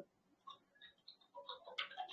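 A few faint clicks of a computer mouse, mostly bunched together in the second half, as the on-screen chart is dragged and scrolled.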